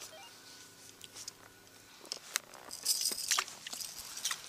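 Quiet, with a faint steady hum, then scattered light clicks and rustles from about two seconds in.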